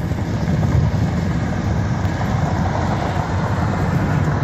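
Steady road noise of a car cruising at freeway speed, heard from inside the cabin.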